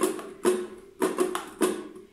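Ukulele strummed at a quick tempo in a down, up, muted chuck, down pattern: about five short strums, each chord cut off quickly.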